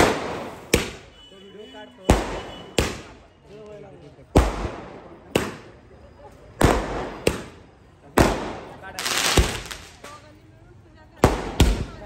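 Firecrackers going off on a street: about a dozen sharp bangs at irregular intervals of roughly a second, each dying away briefly, with a longer crackling burst about nine seconds in. Voices are heard between the bangs.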